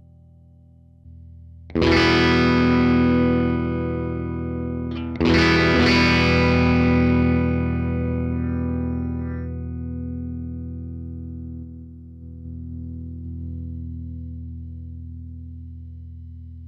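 Electric guitar played through a Fender Mustang GTX100 modeling combo amp: a chord strummed about two seconds in and another about three seconds later, each left to ring out and fade slowly.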